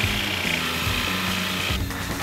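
HART 20V brushless cordless jigsaw cutting a smooth curve in wood with its orbital action switched off, a steady blade-and-motor buzz that stops shortly before the end.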